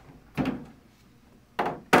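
Plastic sidewalls of a Monoflo collapsible bulk container folding down onto the base: a hollow thunk about half a second in, then two more knocks close together near the end.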